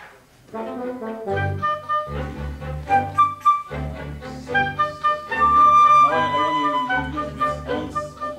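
An orchestra playing a passage in rehearsal, coming in about half a second in, starting from one measure before a key change. Sustained pitched notes over a steady bass line, swelling loudest about five to six seconds in.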